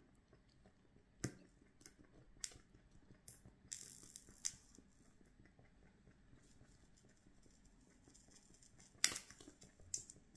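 A thin wax candle burning over a bowl of water, crackling faintly with a few sharp clicks, a brief hiss just before halfway and a louder crackle and hiss near the end as hot wax drips onto the water.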